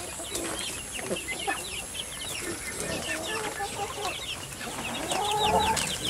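A crowd of young chicks peeping continuously, many short, high, falling peeps overlapping, with lower-pitched chicken calls joining in and growing louder near the end.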